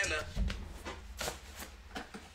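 Handling noise from someone moving close to the microphone: a low bump about a third of a second in, then several soft rustling scrapes.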